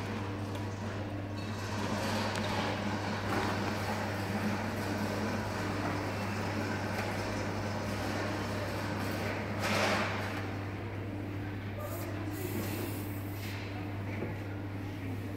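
HP LaserJet Enterprise M725 multifunction printer running with a steady low hum and a fainter tone pulsing on and off at even spacing, with a brief rush of noise about ten seconds in and a high hiss near the end.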